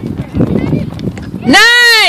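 A spectator's loud, high-pitched cheering shout near the end, rising and then falling in pitch, greeting a goal, over the chatter of other voices.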